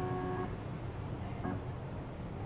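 Electronic beep from a clinical chemistry analyzer during its reading cycle. A steady beep cuts off about half a second in, and a short blip follows near the middle, over a steady low hum.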